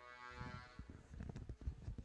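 Faint, irregular low thumps and knocks, the handling and bumping noise picked up by stage microphones as people move about and settle at a panel table. A brief steady pitched tone fades out in the first second.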